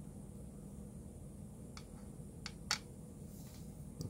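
A few light clicks and taps, the loudest just under three seconds in, from a small circuit board being handled and set down on a tabletop, over a faint steady room hum.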